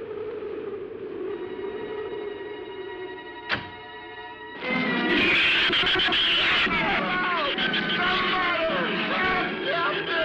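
Film score music: a quiet held chord over a steady low background noise, a single sharp click about three and a half seconds in, then a sudden loud swell of tense music with sliding, falling notes from about five seconds in.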